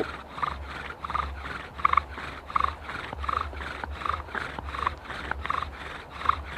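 Bow drill spinning a wooden spindle in a hearth board with steady, light strokes: the spindle squeaks against the board in a short squeal at each stroke, about three every two seconds. This is the warming-up stage, with little downward pressure, before the friction is pushed to make an ember.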